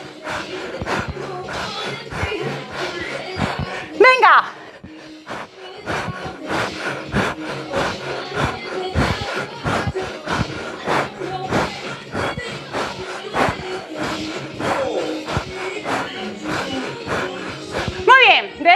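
Upbeat background workout music with a steady, driving beat.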